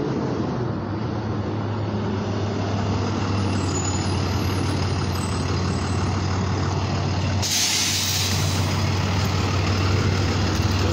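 A heavy vehicle's engine runs with a steady low drone. About seven and a half seconds in, a loud hiss starts and lasts a couple of seconds.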